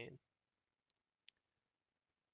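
Near silence, broken by two faint, very short clicks about a second in, under half a second apart.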